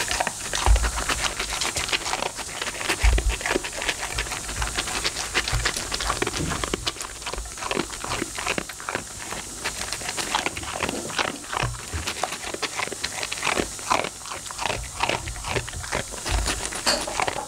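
A Labradoodle eating dry kibble from a steel-lined bowl: rapid, crisp crunching that goes on without a break. A few low thumps come in the first six seconds.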